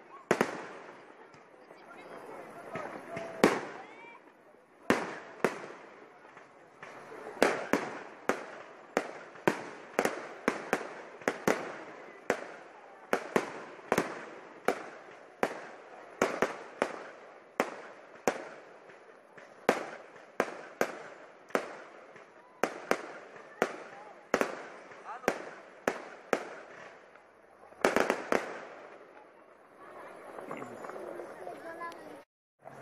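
Fireworks display: a long series of sharp bangs from shells bursting overhead, each with a short echoing tail. The bangs come sparsely at first, then about one or two a second through the middle, with a quick cluster of several near the end.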